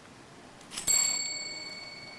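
A single bell-like ding just under a second in: a sharp strike that leaves several high tones ringing and slowly fading.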